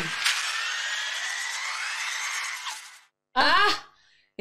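Film soundtrack sound effect: a hissing whoosh with a whine that slowly rises in pitch, fading out about three seconds in, followed by a brief voice.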